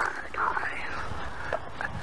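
A faint whispered voice.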